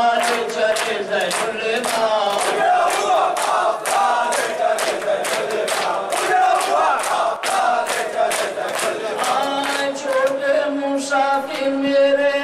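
A noha (mourning lament) chanted by a male lead reciter and a group of men in unison, with rhythmic matam chest-beating, open hands striking chests about two or three times a second.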